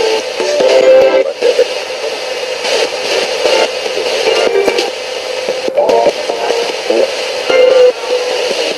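RadioShack pocket radio scanning up the FM band as a spirit box, played through a small capsule speaker. It steps from station to station several times a second, giving chopped snippets of broadcast music and voices broken up by static hiss.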